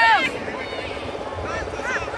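Women players shouting short, high calls across the pitch during a touch football game. The loudest shout ends just after the start, and a few fainter calls follow near the end, over a steady background drone.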